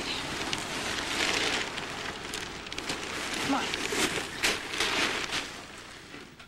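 Plastic garbage bag full of shredded paper rustling and crinkling as it is handled, with many small crackles, dying away near the end.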